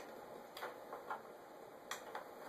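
A few light clicks and taps from a USB cable's plastic connector being handled and fitted at the desk, spaced unevenly, the sharpest near the end.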